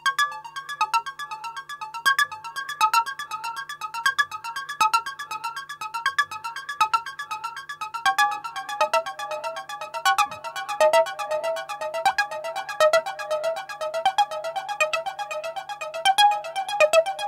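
Korg Volca Bass analog synthesizer running a looping step sequence of short, high-pitched notes in quick succession. About halfway through, the notes shift lower as the pattern is transposed down, shown on the synth as -12.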